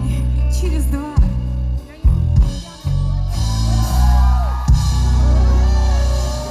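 Live pop band playing loud through a PA, recorded from the crowd: heavy booming bass and drum-kit hits in the first half, then a winding melodic line from about three seconds in.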